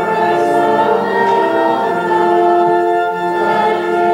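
A slow hymn in held chords, changing every second or so: the congregation singing with the organ.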